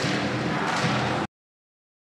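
Stadium crowd noise from a football TV broadcast, a steady wash with no commentary, which cuts off abruptly to dead silence a little over a second in, at an edit between clips.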